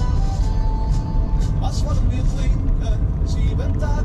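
Car driving on a road, heard from inside the cabin: a loud, steady low rumble of engine and tyres, with music and a voice, most likely singing, playing faintly over it.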